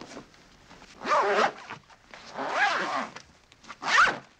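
A man's strained, rasping gasps, each with a groan that bends in pitch, three of them in a row, the last and loudest near the end.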